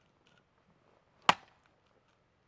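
One sharp crack of an axe striking and splitting a log of firewood, a little over a second in.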